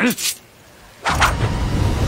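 A short murmured 'mm' from a voice, then about a second in a loud low rumble starts suddenly and holds, with a faint steady tone above it.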